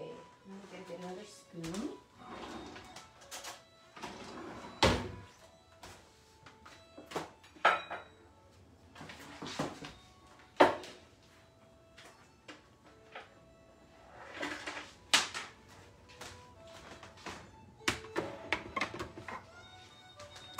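Scattered knocks and clinks of kitchen things being handled, with about half a dozen sharp ones; the loudest comes about ten seconds in.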